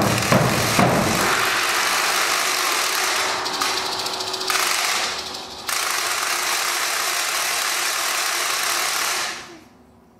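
A sustained, rapid, noisy rattle from the band's percussion, heard as an even hiss-like texture without pitch. It sags about five seconds in, comes back suddenly louder, and fades away near the end.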